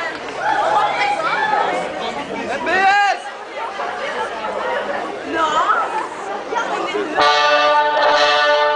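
Voices chattering and calling out among the audience and children on stage. About seven seconds in, loud music starts abruptly over the stage PA with a held chord.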